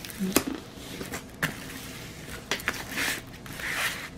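Hands rubbing and pressing on a diamond painting canvas through its plastic cover film: soft rustling and scraping of the plastic, with a few sharp clicks, as the stiff canvas is pushed flat.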